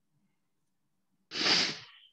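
A person's single short, noisy burst of breath into a call microphone, such as a sneeze or sharp exhale, about a second and a half in, sudden and loud, fading over half a second after near silence.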